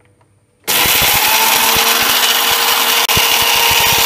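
Electric mixer grinder with a stainless steel jar switching on about a second in and grinding roasted whole spices into powder: a loud, steady motor whirr with the spice pieces rattling against the jar. It breaks off for an instant near the end, then runs on.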